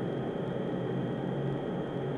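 Steady background hiss with a faint low hum, even throughout, with no distinct strokes or events.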